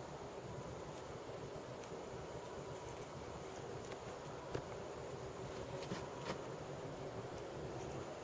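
Quiet room tone with a faint steady hum. A few soft clicks come from paper beads and elastic string being handled.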